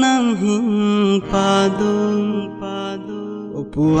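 A song: a singing voice holding long, sliding notes over instrumental backing, easing off briefly just before the next line begins.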